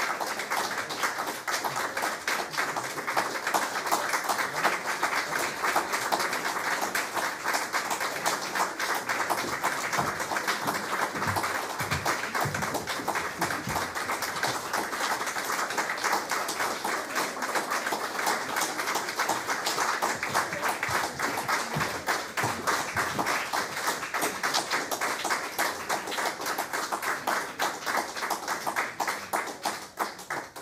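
Audience applauding steadily, a dense patter of many hands clapping that tails off at the very end.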